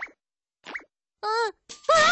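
Cartoon sound effects: a short plop, then a quick rising whistle-like glide, and a brief wordless voice sound. Children's music starts right at the end.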